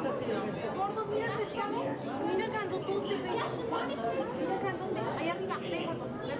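Indistinct chatter of many people talking at once, with a low steady hum underneath.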